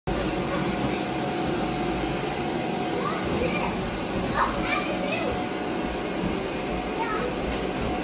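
Electric blower of an inflatable bounce house running steadily with a faint whine, keeping it inflated, while children's voices and shouts come through briefly a few seconds in.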